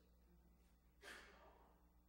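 Near silence: room tone with a low hum, and a short, faint breathy exhale about a second in that fades within half a second.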